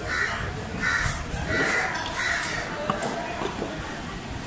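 A crow cawing four times in quick succession over the first two and a half seconds, with the knocks of a cleaver chopping fish on a wooden block.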